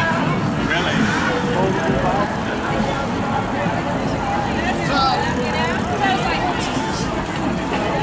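A large group of cyclists riding past: scattered voices and chatter over steady street and traffic noise.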